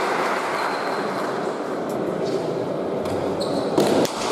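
Hall noise and spectators' chatter echoing in an indoor pelota court, with a few faint knocks and then, near the end, one sharp smack of the pelota ball.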